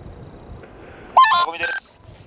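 A phone ringtone: a quick run of electronic tones stepping from pitch to pitch, starting about a second in and stopping just before the end, over low background noise.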